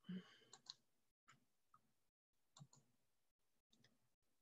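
Faint clicking from a computer mouse and keys, heard through a video-call microphone in several short clusters with the line cutting to silence between them.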